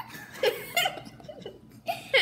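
Laughter in a few short bursts, with gaps between.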